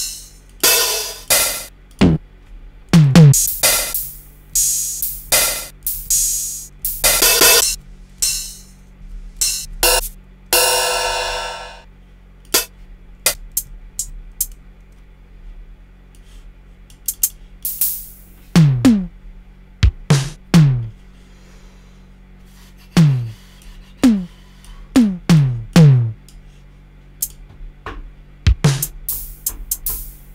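Drum-machine samples auditioned one hit at a time in a Native Instruments Battery sampler, spaced irregularly with no groove: short bright hi-hat and cymbal hits and one longer ringing hit in the first half, then low drum hits that fall in pitch in the second half.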